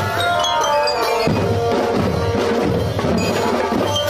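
Marching drum band playing: bass and snare drums keep a steady beat under a high melody line of held notes.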